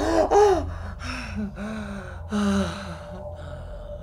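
A man's gasps and strained, breathy vocal sounds in a voice-acted scene, loudest in the first half second and then quieter, broken breaths and low groans, over a faint steady low hum.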